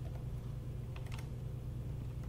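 Quiet room tone: a steady low hum with a few faint, short clicks about a second in.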